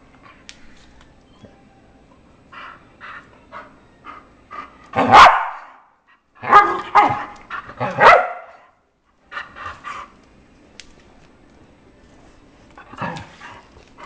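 English bull terrier play-barking and yipping while being teased: a few short yips, then a loud bark about five seconds in and a quick cluster of loud barks soon after, tailing off into a few small yips.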